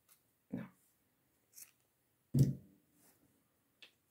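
Scattered handling noises from hand crocheting with yarn and a crochet hook: a few soft rustles and small clicks, with one louder thump about two and a half seconds in.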